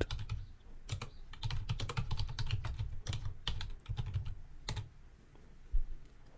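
Typing on a computer keyboard: a run of keystrokes for about four seconds, then one last separate keystroke near the end as the typed command is entered.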